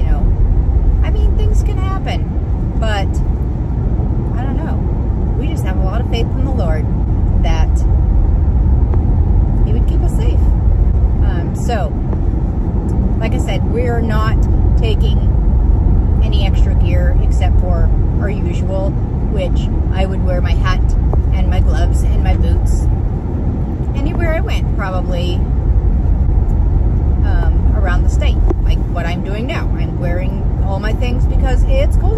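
A woman talking over the steady low rumble of a car on the road, heard inside the cabin.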